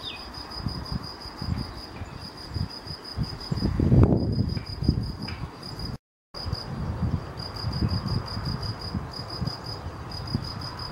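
Crickets chirping: a high, pulsing chirp repeated several times a second, over a low, gusty rumble that swells about four seconds in. The sound cuts out for a moment just past the middle.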